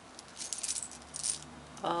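Small buttons clicking and clattering together as they are shaken out of an organza bag into a cupped palm: a quick run of light clicks over about the first second and a half.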